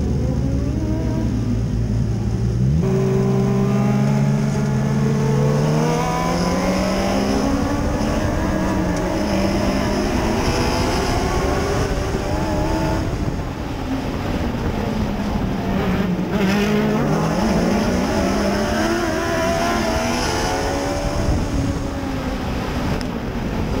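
Mod Lite dirt track race car's engine, heard from inside the cockpit. It idles low for about three seconds, then its pitch jumps and climbs as the car pulls away. After that it rises and falls with the throttle as the car runs laps.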